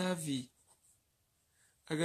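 A man's voice speaking for about half a second and again near the end, with the faint scratch of a pen writing on paper in the quiet gap between.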